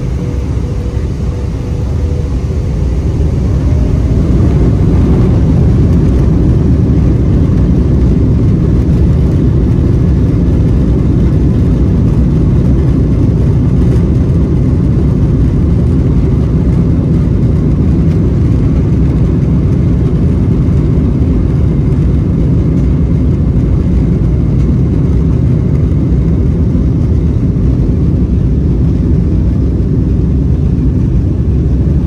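Boeing 777-200LR's GE90 engines spooling up for takeoff, heard inside the cabin over the wing. A whine rises over the first few seconds as the sound grows louder, then settles into a steady loud rumble as the jet rolls down the runway.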